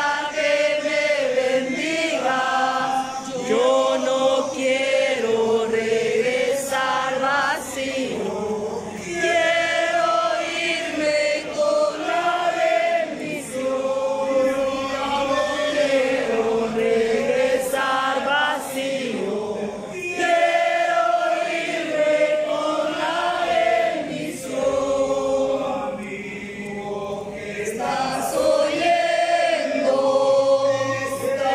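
Congregation singing a praise song together, many voices holding long notes.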